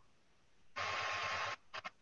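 A burst of steady hiss with a faint tone in it, under a second long, switching on and off abruptly, then a few short clicks. This is typical of another participant's video-call audio line opening briefly.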